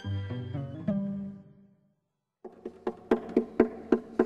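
Low string-instrument notes that die away about a second and a half in. After a brief cut to silence comes a quick run of knuckle taps on a string instrument's wooden body, about five a second, each with a short hollow ring: the luthier tapping to find an open seam.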